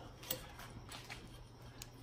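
A few faint, scattered light ticks of thin silver bezel wire being bent and pressed around a stone with the fingers on a steel bench plate.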